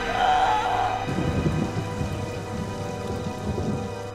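Orchestral score holding a sustained chord. About a second in, a rough low rumble comes in under it and carries on until near the end.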